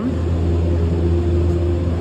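Alpin Express gondola station machinery running: a loud, steady low drone with a constant hum held above it.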